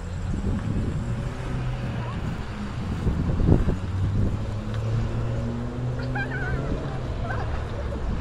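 A low, steady engine hum from a nearby vehicle over a low rumble of wind on the microphone, with a few short bird chirps about six seconds in.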